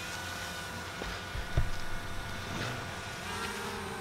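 Steady low machine hum with a fainter tone that wavers in pitch, and a single low thump about one and a half seconds in.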